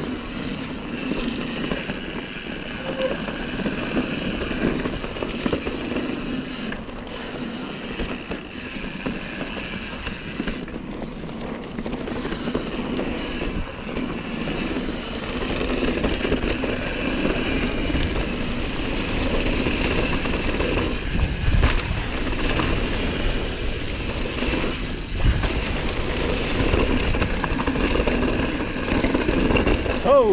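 Mountain bike riding down a dirt trail: tyres rolling over dirt and the bike rattling over bumps, with wind on the microphone. The noise grows louder about halfway through, with a few heavier jolts.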